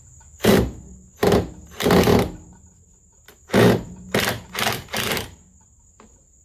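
Ryobi cordless driver run in seven short bursts, in two groups, as it drives screws into new lumber.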